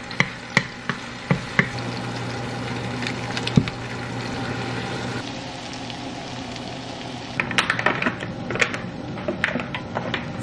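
Butter and minced garlic sizzling in a nonstick frying pan with a steady hiss, a wooden spatula stirring and tapping against the pan. Near the end, a quick run of clicks and rustles.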